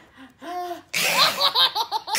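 A baby laughing: a short high squeal about half a second in, then louder, breathy belly laughs from about a second in.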